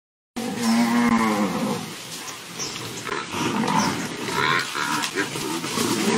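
African buffalo bawling: one long call about half a second in, then shorter calls amid the herd's commotion as lions close in.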